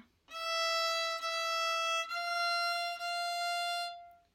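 Violin playing four bowed notes on the E string: open E twice, then F natural twice. Each note is held just under a second, with a small step up in pitch for the second pair.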